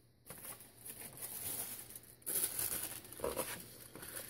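Paper strip and its clear plastic backing sheet rustling and crinkling as they are handled, growing louder a little past halfway.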